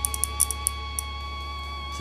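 Small 12-volt relay clicking several times in quick, irregular succession as power from a 12 V adapter is touched to it, switching it on and off. The clicks stop about a second in, and faint background music with steady held tones runs underneath.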